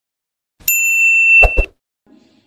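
Notification-bell 'ding' sound effect, one bright tone held about a second, with two quick clicks near its end.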